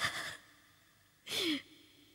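A woman crying: a short sobbing breath right at the start and another about a second and a half in, the second ending in a falling, voiced cry.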